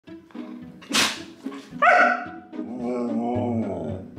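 Siberian husky 'talking': a short bark about a second in, a brief high call that slides down in pitch around two seconds, then a long drawn-out howl-like call that falls in pitch at the end.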